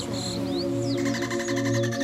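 Ambient meditation music: sustained soft drone tones with a faint rapid pulsing and a few short, high chirps.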